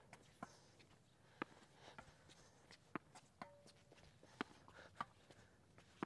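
Faint, sharp knocks of a tennis ball on racket strings and on a hard court, about one a second, as soft sliced drop shots are traded close to the net.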